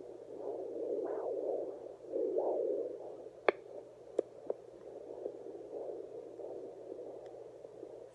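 Handheld pocket fetal Doppler's loudspeaker giving a rising-and-falling whooshing noise as its probe is moved over the lower belly, searching for the fetal heartbeat after picking up the mother's own. A few sharp clicks sound from about three and a half to four and a half seconds in.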